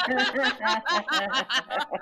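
Several people laughing, in quick short pulses of laughter.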